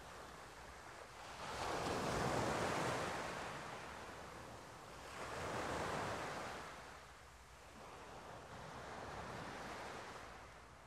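Sea waves washing in on the shore: the surf swells and fades in three slow surges, the loudest about two seconds in.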